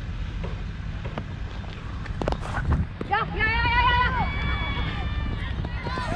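Wind buffeting a helmet-mounted camera's microphone, with a few sharp knocks. About three seconds in, a player gives a long, drawn-out shouted call that rises and then holds.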